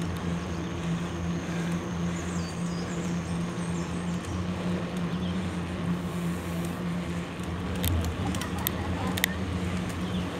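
A motor vehicle's engine running at a steady speed, heard from the moving vehicle with wind and road noise. A few sharp clicks come near the end.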